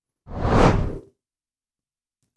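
A single whoosh sound effect for an animated news-graphics transition, swelling and fading within about a second.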